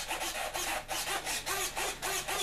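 Micro servos in an RC glider buzzing in short back-and-forth bursts, about four to five a second, each with a brief whine that rises and falls, as the control surfaces are driven to and fro in a radio function check.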